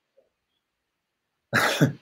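Near silence, then a man's single short cough about one and a half seconds in.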